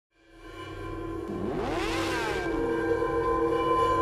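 Logo-intro sound design: a steady droning pad fades in from silence, with a sweep that rises and falls in pitch from about one and a half to two and a half seconds in.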